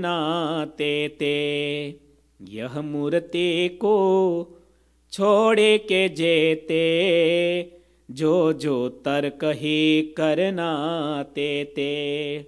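A man's voice chanting a devotional verse unaccompanied into a microphone, in four long melodic phrases with a wavering, held pitch, separated by brief pauses.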